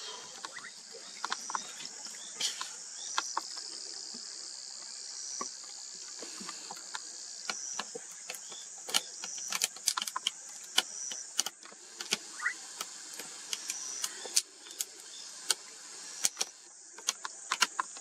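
Insects chirring steadily in a high band, with many scattered sharp clicks and knocks that come more often near the end.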